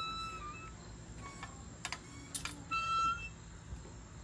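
Two steady electronic beeps, the first about half a second long at the start and the second a little under a second before the end, with two sharp clicks between them.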